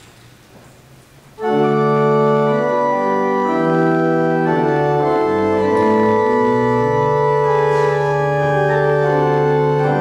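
Church organ starts playing a hymn about a second and a half in, loud held chords moving over a bass line: the introduction to the hymn the congregation has been asked to sing.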